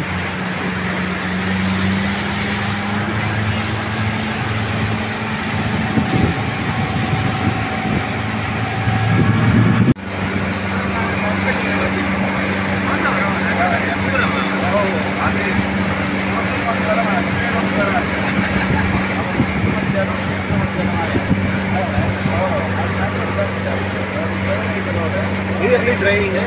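Motorboat engine running steadily under way, with wind and rushing water over it. The sound breaks off about ten seconds in and picks up again at a slightly different pitch.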